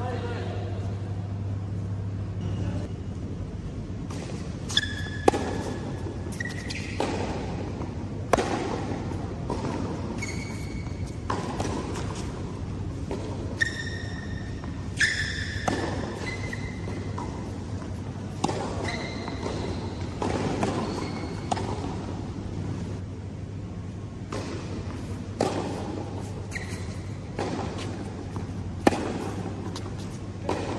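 A tennis rally on an indoor hard court: sharp racquet-on-ball hits and ball bounces come every second or few throughout. Short high squeaks from court shoes follow several of the hits. The sounds echo in a large hall.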